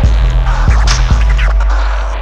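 Hip-hop turntablist track: vinyl scratching in quick sweeps over a deep bass and kick drum. The low end thins out near the end.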